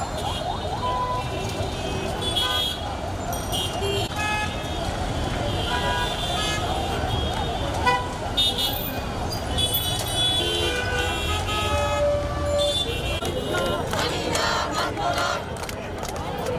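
Busy street crowd: many voices mixed with traffic noise and repeated short vehicle horn toots throughout.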